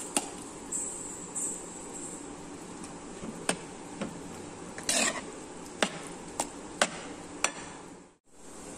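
Steel spoon stirring cooked rice into a spinach and dal mixture in a pan, knocking sharply against the vessel now and then, with one longer scrape about five seconds in, over a steady hiss.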